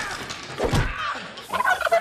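A chicken squawking as it struggles, with a thump of an impact about two thirds of a second in and a burst of squawks near the end.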